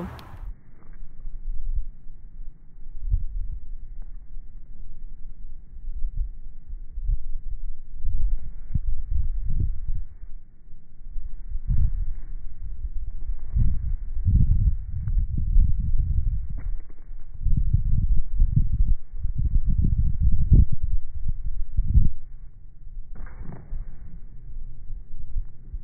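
Slowed-down audio from slow-motion footage of basketball play: deep, drawn-out thumps and a low rumble with no high sounds. The thumps come again and again, busiest through the second half.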